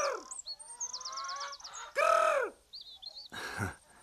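Two drawn-out cries from a bird of prey, each rising and then falling, come at the start and again about two seconds in. Small birds twitter thinly and high in between, and a brief rustle of noise follows near the end.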